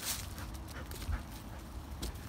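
A blue heeler cattle dog making a few faint, short sounds, with a brief rustle right at the start and a low thump about a second in.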